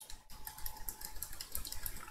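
Typing on a computer keyboard: a quick, irregular run of keystrokes, about five a second, as a row of digits and spaces is entered.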